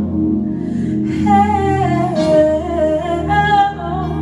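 A woman singing a slow worship melody into a microphone over sustained electronic keyboard chords. Her voice comes in about a second in with long held notes that drift downward, then rise again near the end.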